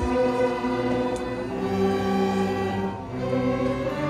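A student string orchestra playing, violins and lower strings bowing held notes together, the chords changing every second or so.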